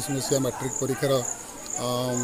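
Insects making a steady, high-pitched chirring that pulses, under a man's speaking voice.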